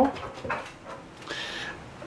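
A dog whining briefly, a thin high whine about a second and a half in.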